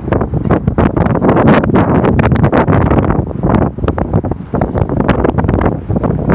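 Loud, gusty wind buffeting the microphone, with irregular crackles running through it.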